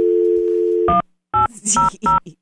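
Telephone dial tone, the steady two-note North American hum, cuts off about a second in. Touch-tone keypad beeps follow, three of them about half a second apart, which by their tone pairs dial 1, 8, 0: the start of a 1-800 number.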